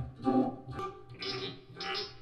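Playback of a recorded improvisation: plucked guitar notes over a bass line, the notes falling about twice a second.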